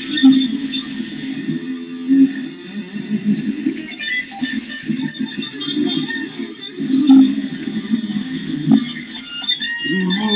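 Electric guitar improvising quick single-note lines in the key of F sharp, one fast picked note after another with no pause.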